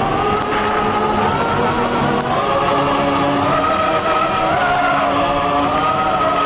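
Instrumental and choral interlude of an old Hindi film song: orchestra and chorus voices hold long, slowly gliding notes between sung verses. The sound is dull and band-limited, like a radio broadcast recording.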